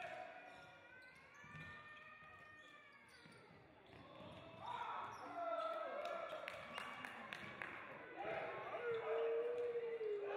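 Futsal ball being kicked and bouncing on a wooden sports-hall floor, the hits echoing in the large hall, with players' shouts over the play. The knocks and shouts grow busier in the second half, and a long drawn-out shout starts near the end.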